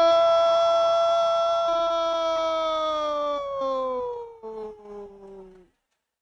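A Brazilian TV commentator's drawn-out "goooool" shout announcing a goal. It is one long held note that slowly falls in pitch and breaks up near the end.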